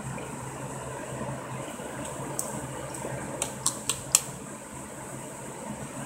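Person drinking soda from a glass bottle, with a few short clicks from the mouth and bottle, one about two and a half seconds in and several between three and a half and four seconds in, over a steady fan-like room hum.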